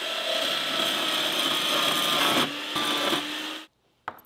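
Vertical bandsaw cutting through a thin metal rod: a steady, gritty cutting noise that dips briefly about halfway through and stops suddenly shortly before the end.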